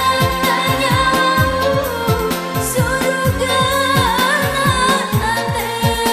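A Mandar pop song with singing over a programmed keyboard arrangement. A steady beat of deep, falling electronic drum hits runs under a wavering melodic vocal line.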